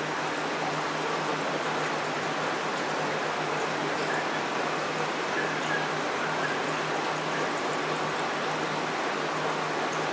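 Steady rushing, water-like hiss with a low steady hum underneath, typical of a running reef aquarium's circulation pump and moving water.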